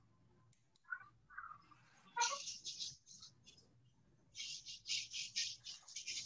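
Faint bird chirping: a few short high notes about a second in, a louder chirp just after two seconds, then a quick run of high chirps, about four or five a second, in the second half.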